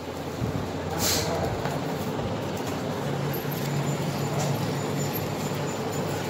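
Paper plate making machine running with a steady low hum, with a short hiss about a second in.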